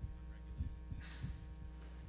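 Steady low electrical hum in the room's sound pickup, with a few faint soft low thumps and a brief faint hiss about a second in.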